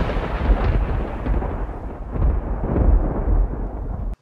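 Thunder sound effect: a long rolling rumble with a hissing crackle on top, swelling again about two and three seconds in, its high end slowly dying away.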